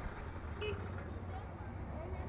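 Roadside street ambience: a steady low rumble of road traffic, with a faint short sound about half a second in.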